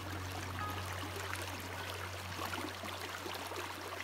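Creek water running over rocks, a steady even rush, with a low note from the background music fading out beneath it.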